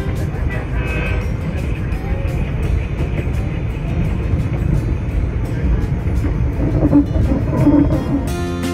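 Passenger train running, a steady low rumble heard from on board, with indistinct voices in it.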